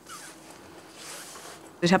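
Faint zipping of a bag being closed, in two short pulls.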